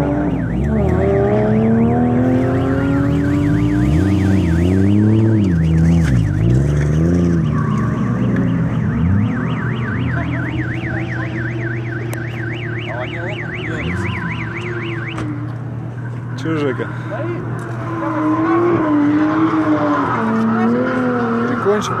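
Car engines revving up and easing off, their pitch rising and falling repeatedly, with a high electronic alarm tone warbling several times a second through the first fifteen seconds.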